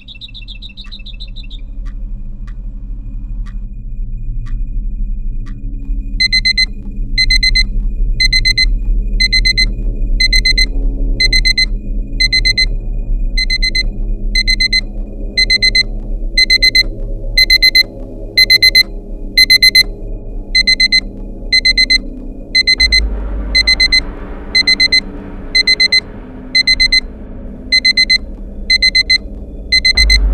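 Electronic alarm clock beeping in short repeated bursts, about one burst every three quarters of a second, starting about six seconds in over a low, steady background.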